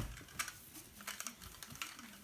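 Soft rustling of bed covers and plush toys with scattered light clicks as a small plastic toy car is handled.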